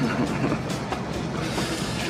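Hip-hop beat playing softly under a steady hiss-like noise.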